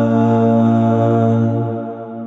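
Multi-tracked male a cappella choir, all voices one singer, holding a sustained final chord over a deep bass note. The chord breaks off about one and a half seconds in and fades away.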